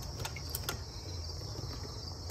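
Crickets chirping steadily in the background, with a couple of faint clicks from a ratchet wrench being worked on an engine bolt in the first second.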